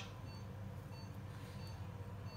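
Faint, short electronic beeps from a patient monitor's pulse oximeter, about one every two-thirds of a second, sounding with the patient's heartbeat, over a steady low hum.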